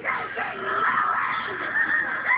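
Tabby kitten meowing, high wavering calls.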